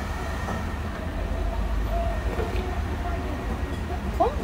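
Steady low rumble of room noise in an eatery, with faint voices in the background.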